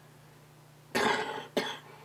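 An elderly man coughing twice, about a second in: a harsh cough and then a shorter one. He is a smoker with lung cancer.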